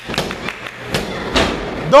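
A few thuds of a hand slapping the wrestling ring mat during a pin count, over crowd voices, with a loud crowd shout of "two!" at the very end.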